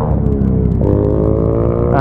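Modified Honda CG motorcycle's single-cylinder engine revving with a steady droning note. The pitch sags slightly, then steps up a little under a second in and climbs slowly.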